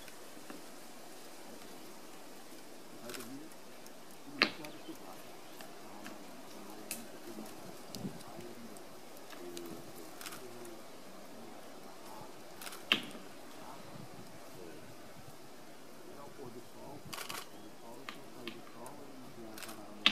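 Sharp single knocks of a stone hammer striking a nut on a rock anvil as a capuchin monkey cracks it open. The knocks are spaced several seconds apart, the loudest about four seconds in, around thirteen seconds, and at the very end, with fainter taps in between.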